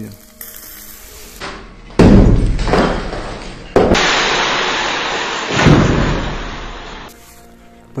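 Hammer blows knocking out brickwork, then an angle grinder cutting into a brick and plaster wall, a steady hiss for about three seconds.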